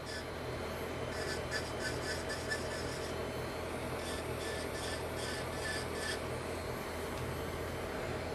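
Electric nail drill running steadily while its small bit grinds around the cuticle of a nail in short, rapid repeated passes, easing off near the end.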